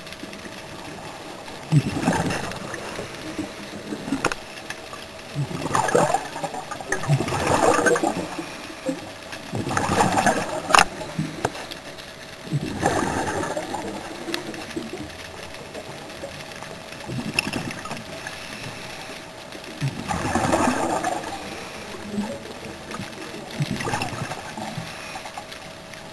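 Scuba regulator breathing underwater: a gurgling rush of exhaled bubbles every three to four seconds, over a steady faint hum.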